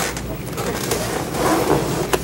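Steady background noise with a low hum: studio room tone between speech.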